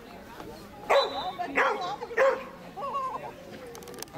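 Border collie barking three times, about half a second apart, starting about a second in, then a short wavering call.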